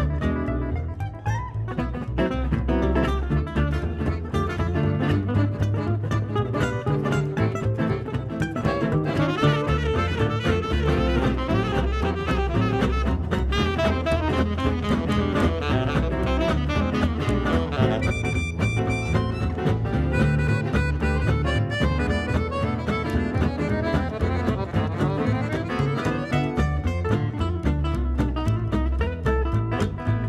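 Gypsy jazz band playing live, with acoustic guitars and accordion in a driving swing.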